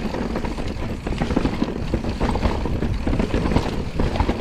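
Forbidden Dreadnought full-suspension mountain bike rolling fast down rocky singletrack: a steady low rumble of tyres on dirt and stone, with many small clattering knocks as the bike rattles over rocks and roots.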